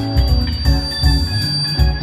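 Live indie rock band playing an instrumental passage of the song: electric guitars, bass guitar and drums, with a high steady tone held over it for most of the passage, cutting off near the end.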